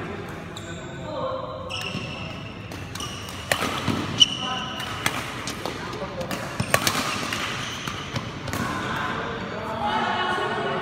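Badminton rally: rackets striking a shuttlecock in a string of sharp cracks from about three and a half seconds in until near the end, with sneakers squeaking on the court floor.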